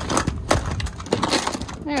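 Small plastic toys clattering and knocking against each other and a plastic tub as hands rummage through them, a rapid run of irregular clicks.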